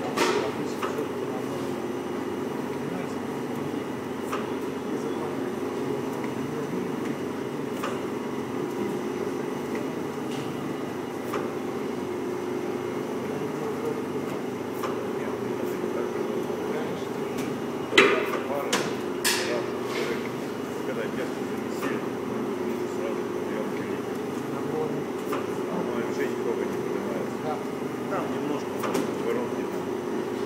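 Dough divider machinery running with a steady hum from its built-in vacuum pump. A few sharp metallic knocks come about two-thirds of the way through.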